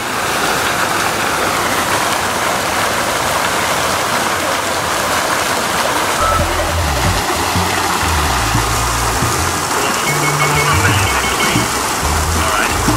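Water splashing steadily from the jets of the Neptune Fountain (Neptunbrunnen). Deep bass notes of music come in about six seconds in.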